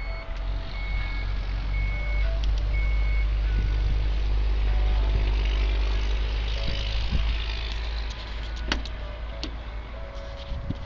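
Evenly spaced high beeps, about one a second, over the first few seconds, from the Dodge Durango R/T's power liftgate chiming as it closes, with a steady low rumble underneath and a sharp click near the end.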